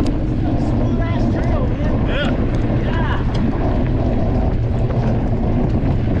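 Wind on the microphone and tyre noise from an electric mountain bike rolling along a dirt trail, heard as a steady loud rush. A few brief, higher wavering sounds come through between about one and three seconds in.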